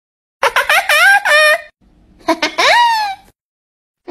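A young goat kid bleating: a quick run of wavering, stuttering calls, then a pause and one longer call that rises and falls.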